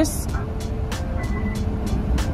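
Low, steady rumble of an idling car heard from inside the cabin, with faint music in the background.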